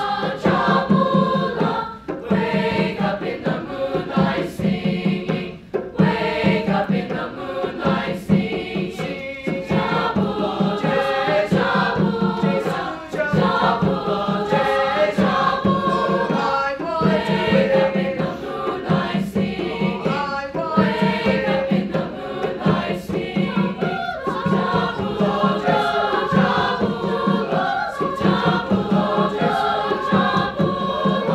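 Mixed choir singing an upbeat song, accompanied by an upright piano and a hand drum beating steadily.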